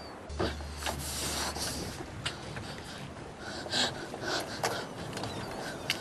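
Water lapping and splashing in irregular swishes, as of small waves against a boat's hull, with a low steady hum in the first second or so.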